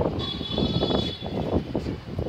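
Wind buffeting the microphone in irregular, rumbling gusts, with a steady high-pitched tone underneath from shortly after the start.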